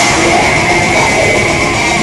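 Death metal band playing live, with distorted electric guitars and a drum kit, loud and without a break.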